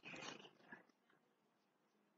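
Near silence: the faint tail of the chanting voice fades out in the first half second, then nothing.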